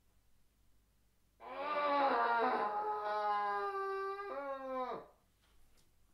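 A long, held, howl-like wailing cry that starts about a second and a half in, wavers slightly, breaks briefly and then drops in pitch as it dies away, lasting about three and a half seconds.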